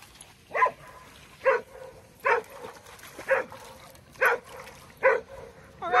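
A dog barking six times at an even pace, about one bark a second.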